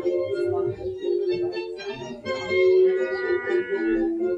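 Dance music playing, with long held notes.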